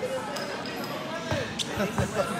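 A volleyball thudding twice in quick succession a little past the middle, a heavy hit followed by a sharper one, over background chatter of voices.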